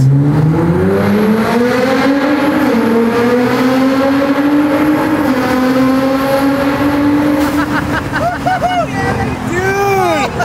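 Nissan GT-R's twin-turbo V6 accelerating hard, heard from inside the cabin in a road tunnel. The revs climb quickly over the first two seconds, then keep rising slowly and hold high. Voices join in near the end.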